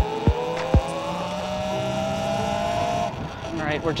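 Talaria xXx electric motorbike's motor whining, rising in pitch as it picks up speed, then levelling off and cutting out about three seconds in. A few sharp clicks come in the first second.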